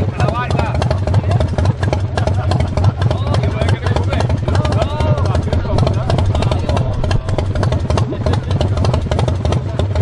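1979 Harley-Davidson's V-twin engine idling loudly and steadily, with people talking over it.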